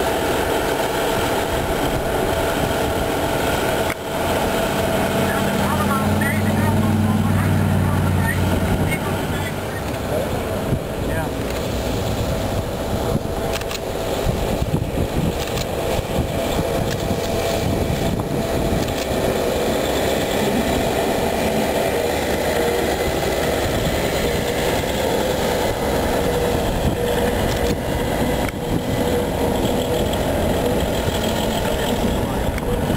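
Wadloper diesel railcars running in the yard during shunting, a steady diesel engine drone. A deeper engine hum swells for a few seconds about five seconds in, then settles.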